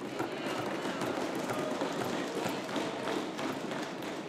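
Members of a parliamentary chamber applauding: a dense, steady patter of many hands clapping at the close of a speech.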